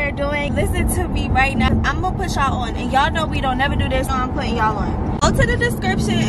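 People talking inside a moving car, over the steady low rumble of the cabin on the road.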